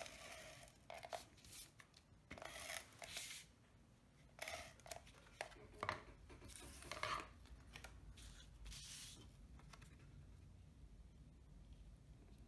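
Faint rustling and scraping of cardstock being handled and slid across the work surface, in about seven short swishes that stop around nine seconds in.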